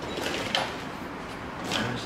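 Metal tool chest drawer sliding open on its runners.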